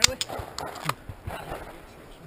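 A few sharp metallic clicks from a semi-automatic pistol being cleared and shown safe, the loudest at the very start and another a little under a second in.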